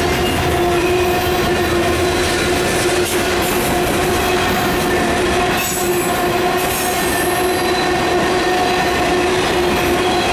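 Freight cars (covered hoppers and tank cars) rolling past close by: steady wheel and rail noise, with a sustained squealing tone from the wheels throughout.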